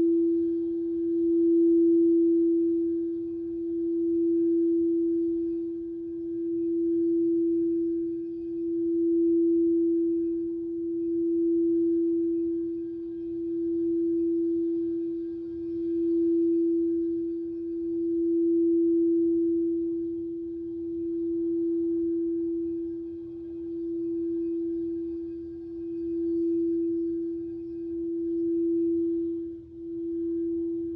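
Crystal singing bowl sung by rubbing a mallet around its rim: one steady, pure tone that swells and fades about every two seconds. Near the end the tone briefly dips.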